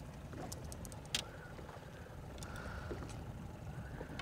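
Faint low rumble of wind and water around a small boat, with a few light ticks and one sharper click about a second in as a landed walleye is handled out of the landing net.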